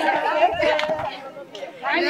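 Several women's voices talking and calling out over one another in a lively group.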